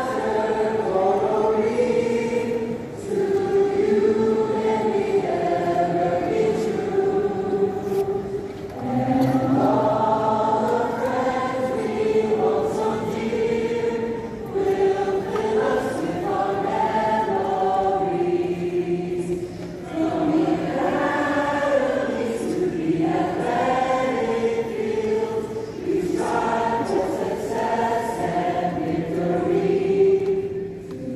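A choir singing the school alma mater in slow, held phrases, with short breaks between lines.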